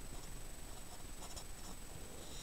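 Sharpie felt-tip marker writing on paper: a few faint, short strokes.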